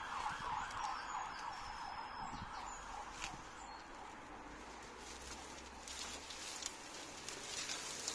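Hand secateurs snipping and twigs rustling as an overgrown shrub is cut back, a few sharp clicks scattered through, over a steady background noise that fades a little during the first few seconds.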